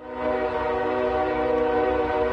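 Locomotive air horn of a passing train sounding one long, steady blast, with a low rumble underneath.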